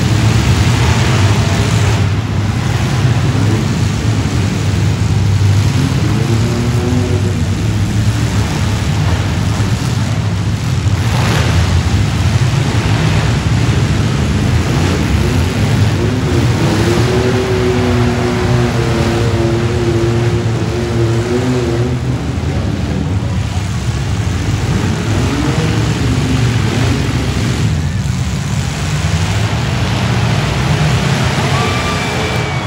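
Demolition derby vans and trucks running hard and revving in a dense, steady din of engines, with crowd noise mixed in. A sharp knock of a hit stands out about eleven seconds in.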